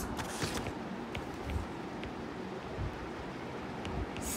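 Low steady background noise with a few faint, light taps of a stylus on a tablet's glass screen during handwriting.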